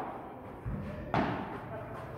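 Padel rally: a soft low thud about a third of the way in, then one sharp hit of the ball on a padel racket just past halfway, its sound dying away in the hall's echo.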